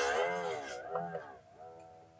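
Strummed strings of a Strat-style electric guitar ringing and fading away. Their pitch swoops down and wavers as the floating tremolo arm is moved after an upward pull.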